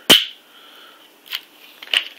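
A sharp plastic click, then a much fainter tick about a second later, as a plastic stir stick is pushed into the seam of a Seagate GoFlex Desk hard-drive enclosure's cover panel.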